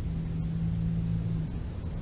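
A distant engine's low, steady hum over a constant low rumble; the hum stops about one and a half seconds in.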